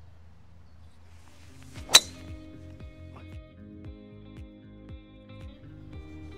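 A single sharp crack of a golf driver striking the ball off the tee about two seconds in. Background music with held notes starts at about the same moment and runs on under it.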